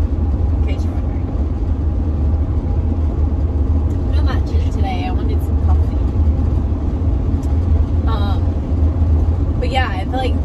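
Steady low road and engine rumble inside the cabin of a Mercedes-Benz van driving at road speed.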